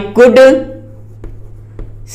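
Chalk writing on a blackboard: after a spoken word, a few faint chalk taps and scratches, two small ticks in the second half.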